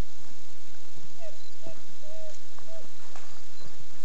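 Footsteps and rustling brush underfoot while walking through forest undergrowth, scattered short knocks and snaps, with four short tonal sounds, like brief whines, in the middle.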